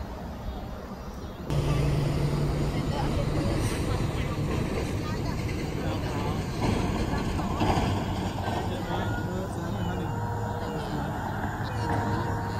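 Street ambience: passing road traffic with a steady low hum, and people's voices. The sound gets suddenly louder about a second and a half in.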